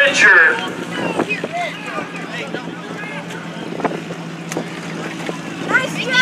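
A sport compact dirt-track race car's engine idling steadily at low revs, with faint voices and a few small clicks over it.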